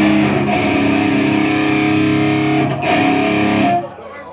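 Amplified electric guitar with distortion holding long ringing chords between songs. The notes change twice and are cut off sharply just before the end.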